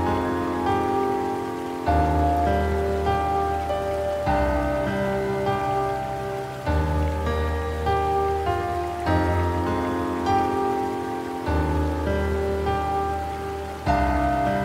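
Slow, relaxing solo piano music: sustained chords with a deep bass note, changing about every two and a half seconds, with single melody notes above.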